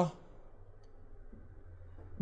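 The end of a man's long, drawn-out hesitation "uhh", cut off just as it begins. Then quiet room tone with a faint click.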